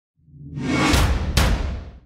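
Logo-sting sound effect: a whoosh that swells up, with a deep boom underneath and two sharp hits about half a second apart, then fades away.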